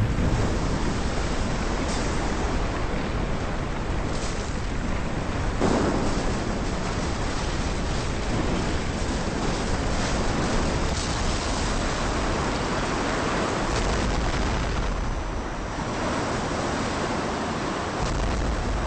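Film sound effect of a tsunami: a steady rush of surging water and surf with a low rumble underneath, swelling briefly about six seconds in.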